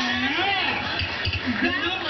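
Speech: voices talking, with no other sound standing out.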